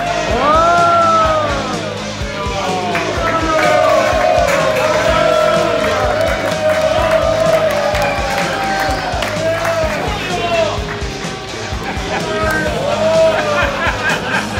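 Rock music playing loudly while a crowd yells, whoops and cheers over it, with a long rising-and-falling shout in the first second or two.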